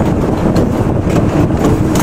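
Toe-lasting machine running with the surrounding shoe-factory machinery: a steady mechanical drone with faint light clicks.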